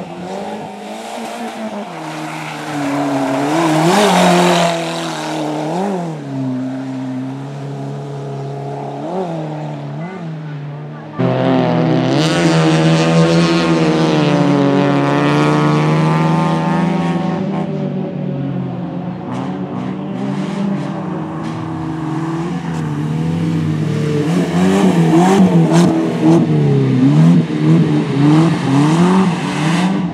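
Suzuki Swift competition car's engine revving hard on a dirt track, its pitch rising and falling quickly again and again with throttle and gear changes. About eleven seconds in it suddenly gets louder and holds high revs, and quick rises and falls come back near the end.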